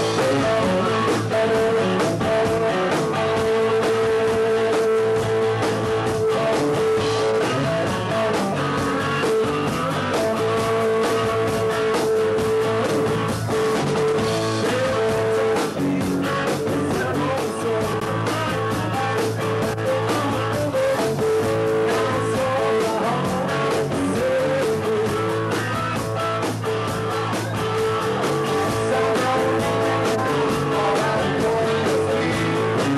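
A rock band playing live: electric guitar over a drum kit, with a long held note sounding through much of the passage and drum hits throughout.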